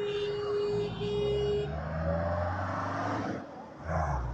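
Road traffic: a car drives past at low speed with a low engine hum, which fades about three seconds in, and a box truck's engine comes in near the end. A steady high tone sounds through the first second and a half.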